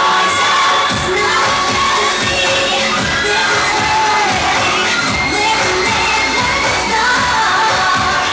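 Crowd cheering and shouting over loud pop music; the music's bass beat comes in about a second in.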